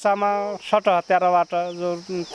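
A woman talking, with a steady high-pitched chirring of insects behind her voice.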